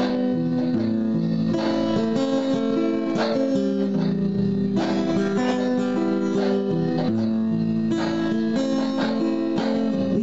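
Acoustic guitar strumming chords, with a strong strum about every second and a half and the chords ringing on between them.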